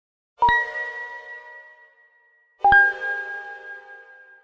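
Two struck chime notes, about two seconds apart, each ringing on and fading slowly; the second note is lower than the first. It is a logo sting.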